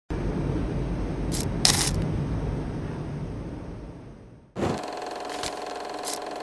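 Intro sound effects: a low rumble that fades away over about four seconds, with two sharp clicks about a second and a half in, then a steady mechanical whirring hum that starts suddenly near the end.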